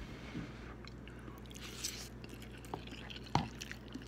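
Quiet chewing and wet mouth noises of a person eating noodles, a few soft smacks and clicks scattered through, over a steady low hum. One sharper click comes late, about three and a half seconds in.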